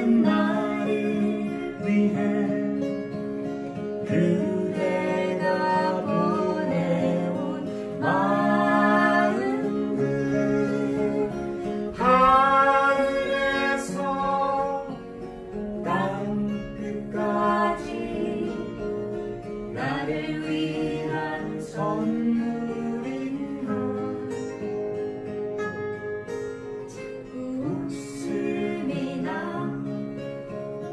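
A man and a woman singing a duet in harmony to two acoustic guitars played together.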